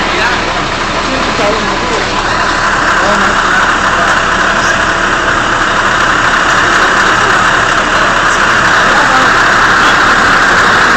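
Diesel engine of a Scania crane truck running steadily while it lowers a load, with a louder rushing noise joining about two seconds in and holding.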